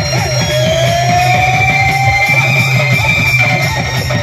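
Sambalpuri folk song performed live through stage loudspeakers: a steady, busy drum rhythm with a long held note that slides slowly upward in the first half.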